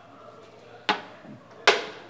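Two sharp clacks of checkers pieces set down on a wooden board during a move, a little under a second apart, the second louder.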